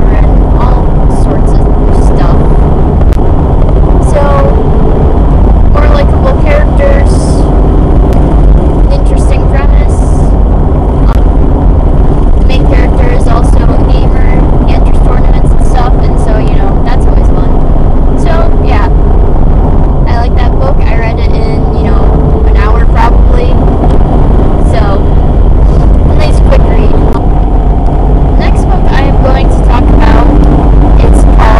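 Loud, steady rumble of a moving car's road and engine noise heard from inside the cabin, with a person's voice talking under it and drowned out.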